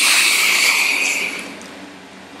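A man's long sigh blown out close to the microphone: a sudden breathy hiss that fades away over about a second and a half.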